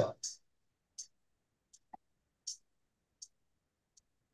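Faint, light clicks from computer input while trading, about one every three-quarters of a second.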